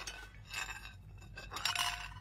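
Lid of an earthenware pot clinking and rattling against the pot twice: a short clatter about half a second in and another near the end.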